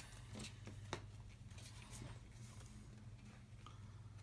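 A near-quiet room with a steady low hum and a few faint light clicks of playing cards being drawn and handled on a wooden table.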